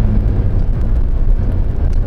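Steady low rumble of road and engine noise inside a pickup truck's cab as it drives along towing a travel trailer.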